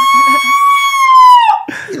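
A man's loud, high-pitched vocal noise, a siren-like squeal held on one steady pitch, which drops off about a second and a half in. It is his trademark 'funny sound', made into the microphone on request. A second, lower voice sounds faintly underneath early on.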